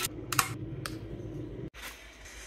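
A few short, sharp plastic clicks from handling the dirty-water tank and filter of a Tineco wet-dry floor vacuum, over a faint low hum that cuts off near the end.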